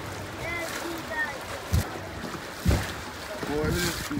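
Faint distant voices over a steady outdoor hiss, with two brief thumps about two and three seconds in.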